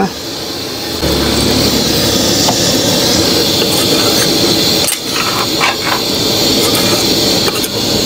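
Chicken and spice masala sizzling in a hot pan on a gas stove. The sizzle grows louder about a second in as a little water is poured onto the frying masala, and a ladle stirs the pan.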